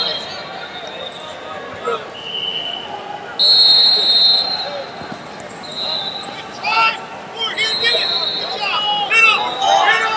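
Referees' whistles in a busy wrestling arena: one loud shrill blast lasting about a second, roughly three and a half seconds in, with shorter, fainter whistles of different pitch before and after, over coaches' shouting and crowd noise.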